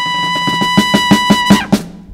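A live band's fanfare: a trumpet holds one high note over a drum roll. The roll builds into a run of loud accented hits, and the trumpet cuts off about one and a half seconds in, just before a final hit, announcing the first-place winner.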